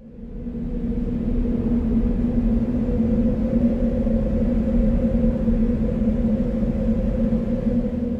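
Ominous end-card music drone: a low, steady sustained tone over a rumble. It swells up out of silence in about the first second, holds level and starts to fade near the end.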